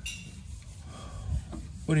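Soft rubbing and scraping handling noise, with a click at the start and a light low knock partway through.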